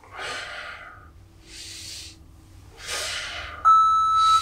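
Heavy exercise breathing during dumbbell deadlifts: a breath out, a breath in, and another breath out. Near the end, an interval timer gives a loud, steady, high beep as it reaches zero.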